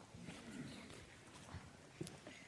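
Near silence in a large room: faint shuffling and a few soft knocks as children settle into their seats, with a faint murmur of a voice.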